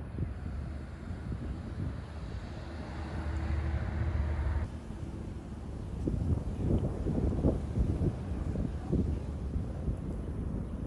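Outdoor ambience: wind buffeting the microphone over a steady low rumble. A rising hiss builds about three seconds in and cuts off suddenly about halfway through, followed by uneven gusts.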